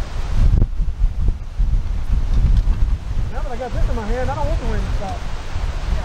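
Wind buffeting the camera microphone: a rough, low rumble throughout. A voice speaks briefly in the middle.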